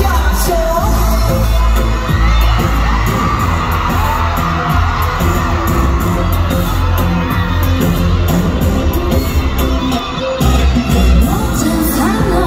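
Live K-pop song played loud through an arena PA: a heavy pulsing bass beat with a woman singing over it, heard from among the audience.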